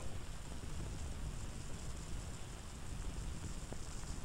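Faint steady hiss with a low rumble underneath: the background noise of an old film soundtrack.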